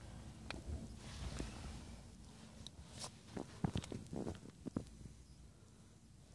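Faint scattered taps, clicks and rustles of a handheld phone and clothing being handled inside a parked car's cabin, over a low steady hum. The taps come thickest around the middle of the stretch.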